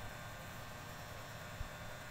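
Faint steady hiss with a low hum: room tone, with no distinct sound standing out.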